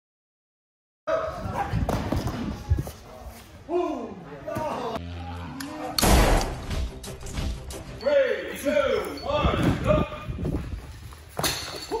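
After a second of silence, voices exclaim over thuds of bodies landing on padded stunt mats, with the loudest impact about six seconds in.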